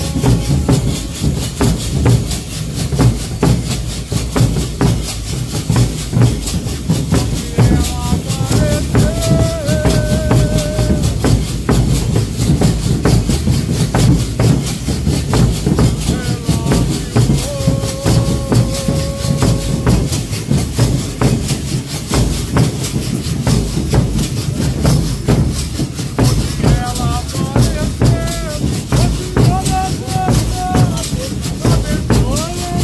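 A Congado guard's drums beat a steady, dense rhythm with rattling percussion, while a lead singer's sung verses come in three times, about eight, seventeen and twenty-six seconds in.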